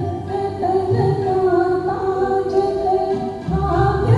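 Singing with musical accompaniment: a slow song of long held notes over a low bass line.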